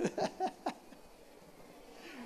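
A man's voice briefly through the stage microphone, a few short vocal bursts, then a lull of low background noise.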